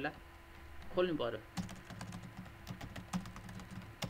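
Computer keyboard keys clicking in a quick run of typing, starting about a second and a half in and running to near the end.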